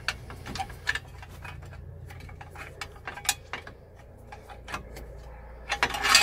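Irregular light metallic clicks and scrapes as a steel hitch lock is shifted over a trailer coupling head to line up its holes, the sharpest knocks about a second in and a little after three seconds.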